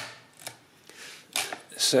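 A light click as a hand takes hold of a mechanical calculator right at the start, then quiet with faint handling. Two short hisses come in the second half, just before speech resumes.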